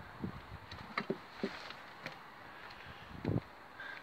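A few faint clicks and light knocks of a hand screwdriver driving a screw into a plastic door-lock base, with a duller knock about three seconds in, over a soft steady hiss.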